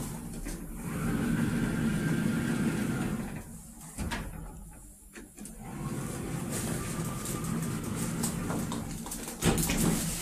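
KONE EcoDisc machine-room-less traction elevator car running: a steady hum and rumble of the car and its drive. It fades for a couple of seconds near the middle, with a single click about four seconds in, then comes back.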